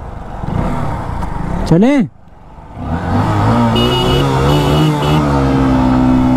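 Two 125 cc single-cylinder motorcycles, a Honda Shine 125 and a KTM RC125, launching from a start: engines revving up, a brief dip about two seconds in, then accelerating hard with the engine note climbing steadily.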